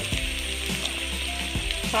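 Sliced shallots, garlic and green chillies sizzling steadily as they fry in oil in a nonstick pan.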